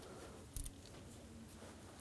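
Quiet hand work with a tool in a car's engine bay: a single short click about half a second in, as a T30 bit is worked onto the screw holding the camshaft position sensor.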